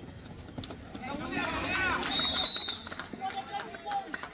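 Men's voices shouting on a kabaddi court, rising to their loudest in the middle seconds. A short, high steady tone sounds at the loudest point.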